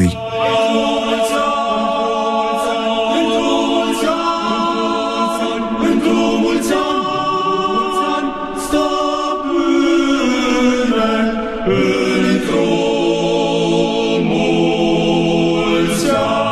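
An a cappella church choir singing slow, held chords in the style of Orthodox liturgical chant, the harmony shifting every few seconds.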